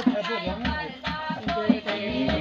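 Dhol drumming with voices singing over it, a lively wedding-music mix of bending sung lines and repeated low drum strokes.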